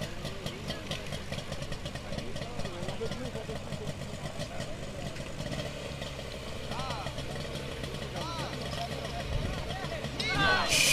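Portable motor fire pump engine running steadily, with voices calling in the background.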